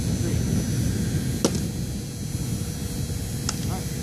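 A pitched baseball popping into a catcher's leather mitt once, a single sharp smack about a second and a half in, with a fainter click about two seconds later, over a steady low background rumble.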